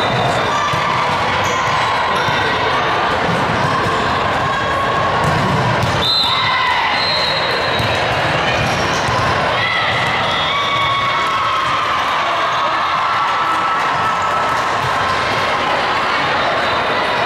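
Volleyball gym ambience: balls being struck and bouncing on the hardwood courts, short high squeaks, and voices calling out, all echoing in a large hall.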